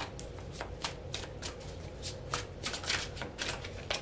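A tarot deck being shuffled by hand: a quick, uneven run of short card clicks, several a second.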